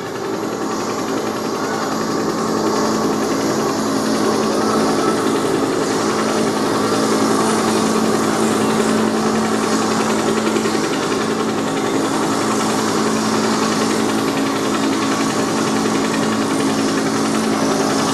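Loud, dense mechanical roar with a steady low hum running through it, swelling over the first few seconds and then holding at full strength.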